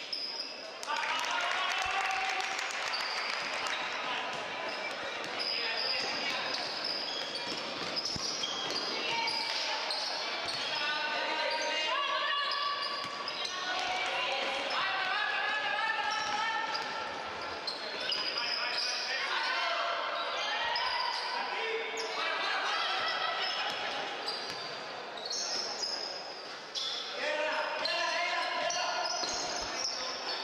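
Basketball game sounds in a sports hall: a ball bouncing on the court, short high sneaker squeaks, and players and spectators shouting and calling throughout.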